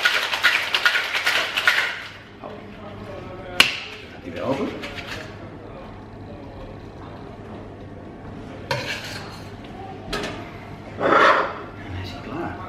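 Ice rattling hard in a two-piece metal cocktail shaker for about two seconds: the wet shake of an amaretto sour after the dry shake. Then a sharp knock as the tins are cracked apart, followed by quieter metal clinks as they are handled and set down.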